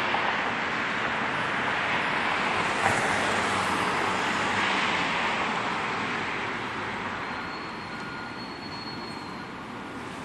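Street traffic noise: a steady rushing of passing vehicles that fades over the last few seconds.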